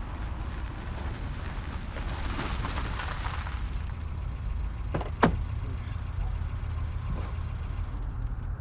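A BMW saloon car rolls up slowly and stops, with a low engine rumble and tyre noise that swells for a couple of seconds. About five seconds in come two sharp clicks close together, the loudest sound here, like a car door unlatching, and a fainter click follows near the end.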